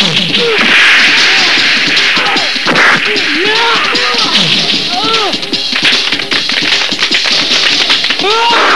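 Film fight sound effects: a rapid run of punch and kick hits and whip-like swishes, over background music.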